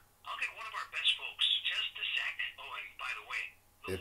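A voice talking through a phone's speaker, thin and narrow-sounding like a phone line, in short phrases.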